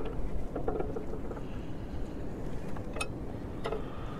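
Wind rumbling steadily on the microphone, with a few light clicks and rustles of electrical wires and terminals being handled, the clearest about three seconds in.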